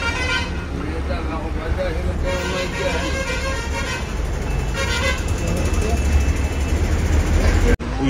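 Bus engine rumble heard from inside the cabin, with vehicle horns honking in a traffic jam: a short honk at the start, a long one from about two to four seconds in, and another short one about five seconds in.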